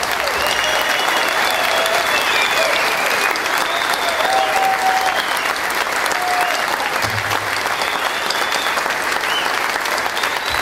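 Large audience applauding steadily, with voices calling out over the clapping.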